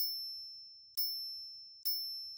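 Three high, clean electronic ding tones about a second apart, each struck sharply and fading away: the chime effect of a channel's end card as its like and share prompts appear.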